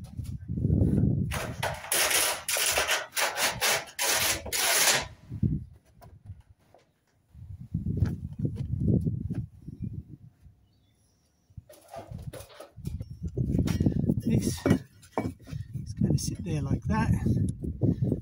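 Scraping and rubbing from a corrugated steel roof sheet being lifted and handled, loudest in a run of harsh scrapes over the first few seconds, then lower rumbling handling noise in patches.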